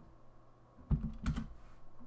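Computer keyboard typing: a few keystrokes in quick succession about a second in, as a terminal command is entered.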